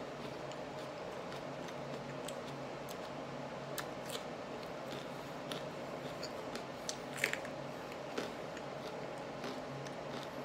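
Chewing raw serrano peppers with the mouth closed: scattered short wet clicks and crunches, the loudest a little past the middle. A steady low hum runs underneath.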